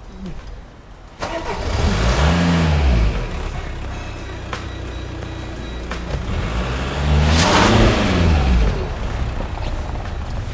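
A car engine starts up and revs twice, its pitch rising and falling each time, as the car pulls away.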